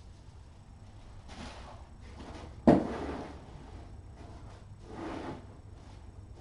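A single sharp thud partway through, fading quickly, with a brief scraping rustle before it and another near the end.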